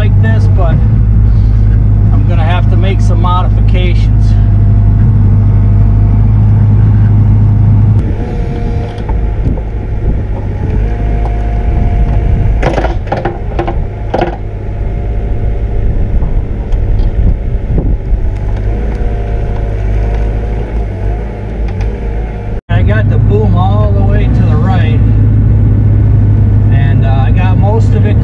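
Bobcat E42 mini excavator's diesel engine running under load with its hydraulics working as the bucket digs dirt. It is a steady low drone inside the cab, then heard from outside for about fifteen seconds, with several sharp knocks of the bucket against rock and timber near the middle.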